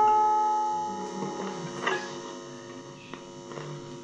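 Electric guitar's last chord ringing out and fading away over the first two seconds, leaving a steady mains hum from the guitar amplifier, with a few faint knocks.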